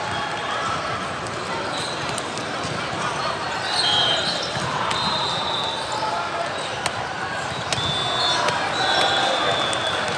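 Busy echoing volleyball-hall ambience: many overlapping voices, with balls bouncing and being struck on the courts. A few sharp ball knocks stand out near the end, and there are short high squeaks about four seconds in and again near nine seconds.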